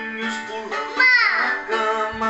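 Children's nursery-rhyme music with a child-like singing voice. About a second in, the loudest sound comes: a pitched sound sliding steeply down over about half a second, as a character tumbles off.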